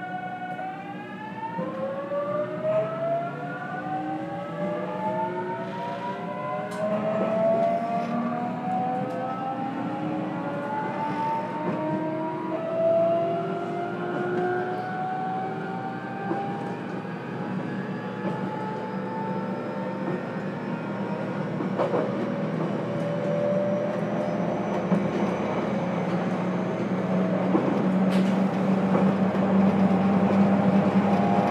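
A JR Kyushu 813 series electric multiple unit accelerating, heard from inside its motor car KuMoHa 813-204. The inverter and traction motors give a stack of whines that begin rising together about half a second in and keep climbing in pitch as the train gathers speed. Running noise from wheels and track grows louder toward the end, with a few sharp clicks.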